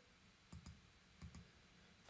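Faint computer mouse clicks, two quick pairs about three-quarters of a second apart, in near silence.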